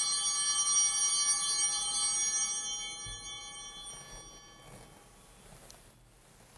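Altar bell rung at the elevation of the chalice during the consecration, marking the moment the consecrated wine is shown. It rings evenly for the first couple of seconds, then fades away over the next few.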